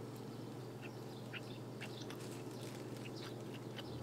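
Fresh cheese curds being chewed, giving off faint, short rubbery squeaks against the teeth: the squeak that marks curds as fresh.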